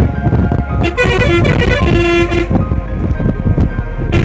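Steady engine and road rumble of a moving vehicle, heard from inside it, with music playing over it. The music is loudest from about one to two and a half seconds in.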